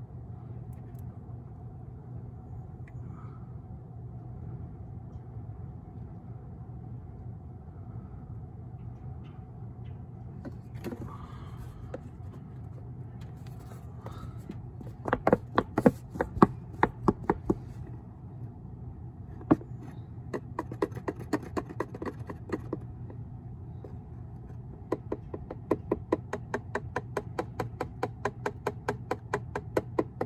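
Motor oil glugging out of a plastic quart jug into an engine's oil filler neck: a quick, regular run of glugs, about four or five a second, as air gulps back into the jug. Before it come a few irregular plastic clicks and knocks from handling the jug, with a low steady hum underneath.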